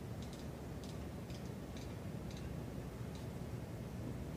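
About eight faint, irregular clicks over the first three seconds from a camera's aperture control stepping through its stops as it is set to f/8, over a low steady room hum.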